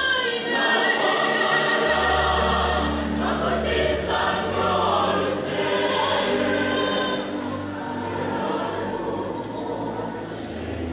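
Large mixed church choir singing a gospel song in parts, with long held notes. The singing thins out and grows a little quieter near the end.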